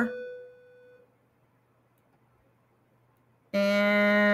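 A woman's voice trails off, followed by about two and a half seconds of near silence; near the end the same voice starts a long, steady-pitched hesitation sound.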